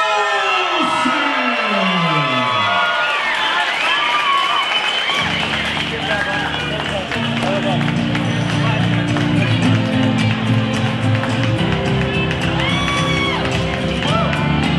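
Arena crowd noise with shouting voices, and a pitched tone gliding downward over the first few seconds. About five seconds in, loud music with a heavy, steady bass line comes in and carries on.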